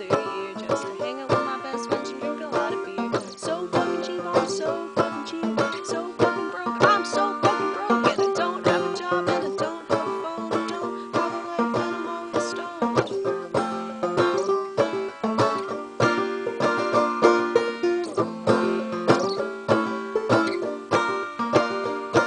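Solo banjo playing a quick, steady stream of plucked notes.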